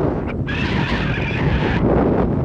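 Road and wind noise of a car driving along a town street. A high-pitched sound runs briefly over it from about half a second in for just over a second.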